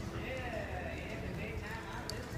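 Indistinct talking close by over the steady background din of an indoor arena, with the hoofbeats of horses moving on the dirt.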